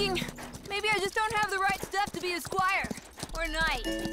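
Horse hooves clip-clopping at a walk, a run of short sharp strokes under a voice.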